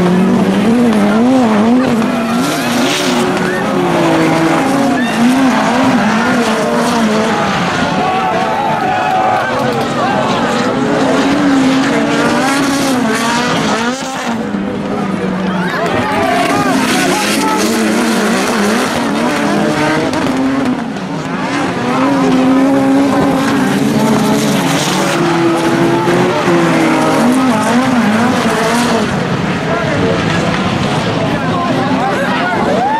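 Several touring cars racing on a dirt autocross track, their engines revving up and down in pitch as they accelerate and lift through the corners.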